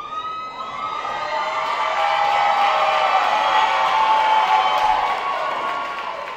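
Audience cheering and screaming at the end of a live dance performance: many high voices together, swelling to a peak in the middle and beginning to fade near the end.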